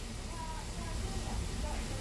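Oil sizzling steadily in a frying pan around grated-cassava fritters as they shallow-fry.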